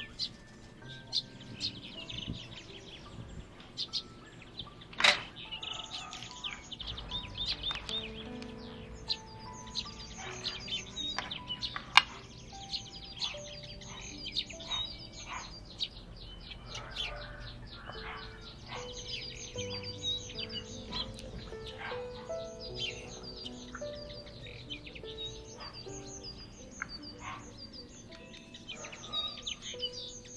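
Small birds chirping and tweeting over and over, with soft background music underneath. A few sharp knocks stand out, the loudest about five and twelve seconds in.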